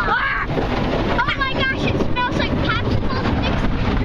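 Car wash cloth strips and brushes scrubbing across the car with water spraying, a steady heavy rumble and wash heard from inside the car. A child's high voice rises over it about a second in.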